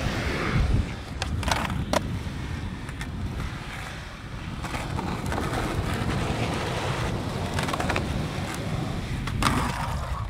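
Skateboard wheels rolling over rough concrete, a steady low rumble, with a few sharp clacks of the board: two about one and a half and two seconds in, and another near the end.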